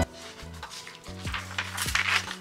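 Soft background music with low held bass notes. Near the end there is a brief papery rustle, which fits a planner page being turned.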